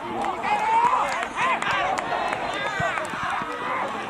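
Several young players shouting and cheering at once, overlapping yells in celebration of a goal.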